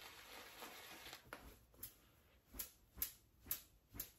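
Faint strokes of a shaving brush loading on a puck of shaving soap in its tub. About a second of soft rubbing is followed by quick, short swipes, roughly two a second.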